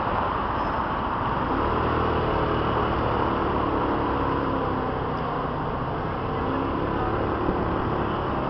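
Steady city street traffic noise heard from a moving bicycle, with a vehicle's engine hum rising for several seconds in the middle.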